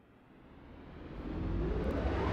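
A swelling whoosh fading up from silence and growing steadily louder, with a rising sweep near the end: the opening riser of the video's background music.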